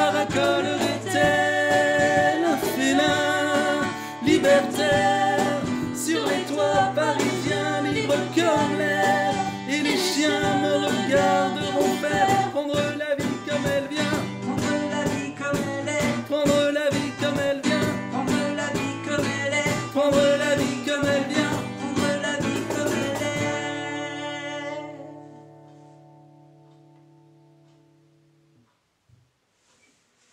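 Two male voices singing in harmony over a strummed acoustic guitar and a cajon beat. About 23 seconds in, the playing stops on a final guitar chord that rings out and fades over about five seconds.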